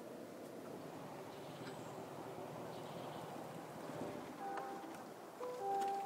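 Faint steady cabin noise inside a 2022 Chevrolet Silverado 1500 pickup on the move. A few short steady tones sound near the end, about a second apart.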